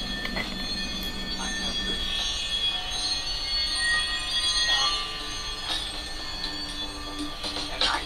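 Steady city street traffic noise, with several high, drawn-out whining tones over it, swelling a little in the middle.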